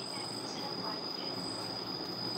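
Room tone between speech: a steady low hiss with a thin, unbroken high-pitched whine.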